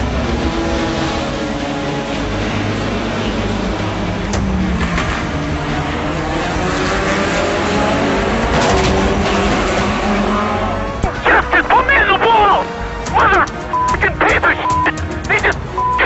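Racing cars' engines accelerating and shifting, their pitch rising and falling, under background music. About eleven seconds in, a raised voice breaks in, cut by several short beeps.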